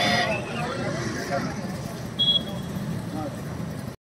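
Street traffic noise from vehicles passing, with faint voices and a short high beep a little over two seconds in.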